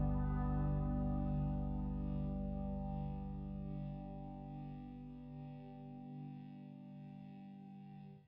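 The song's final chord ringing out on an effects-laden electric guitar with chorus and echo, fading slowly, the lowest notes dying first, until it stops at the very end.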